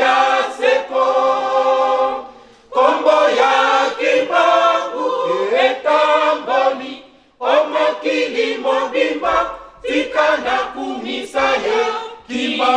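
Mixed choir of men's and women's voices singing a hymn in unison phrases, unaccompanied, with short breaks between lines about two and a half seconds in and again about seven seconds in.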